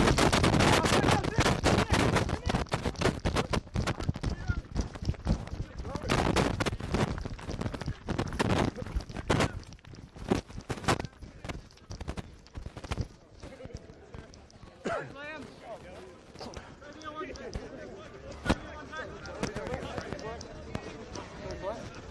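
Loud, rapid crackling and buffeting on the camera's microphone that dies down after about ten seconds. Faint voices follow in the background.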